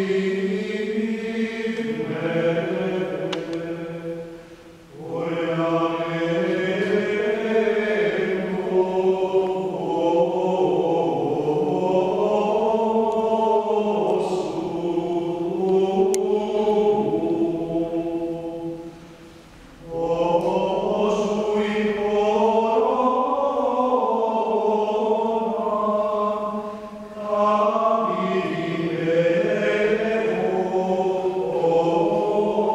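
Ambrosian plainchant sung in unison by men's voices, with reverberation. The singing breaks off briefly three times between phrases, a few seconds in, about two-thirds through and near the end.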